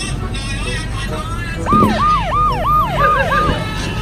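A siren-like alarm sound effect: six quick whoops, each rising sharply and then falling, about three a second, starting a little before the middle and stopping shortly before the end.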